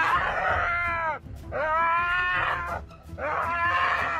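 Striped hyena, restrained by the scruff, giving three drawn-out whining cries, each about a second long and rising then falling in pitch.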